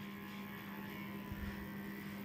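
Small electric pet grooming trimmer running against a dog's paw with a steady, even hum, and a soft low bump about halfway through.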